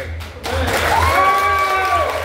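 Audience applauding, starting about half a second in, with one long held cheer rising in pitch and then holding steady over the clapping.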